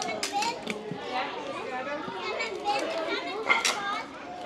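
Young children's voices chattering and calling out outdoors, high-pitched and overlapping. A few short sharp knocks cut through, the loudest a little past three and a half seconds in.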